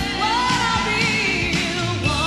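Female lead singer singing live into a handheld microphone over a pop band with a steady drum beat; her voice slides up early on into a held, wavering note.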